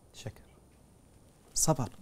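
A pause in a man's speech: a brief faint vocal sound just after it begins, then quiet room tone, and his speaking resumes near the end.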